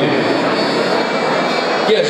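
Piano accordion and acoustic guitar playing together, a dense, steady accompaniment.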